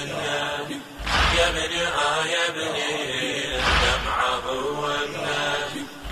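Male voices chanting a Shia latmiya lament, with a deep beat about every two and a half seconds.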